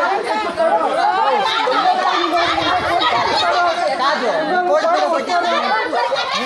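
Several people talking over one another in a street quarrel, a dense tangle of overlapping voices.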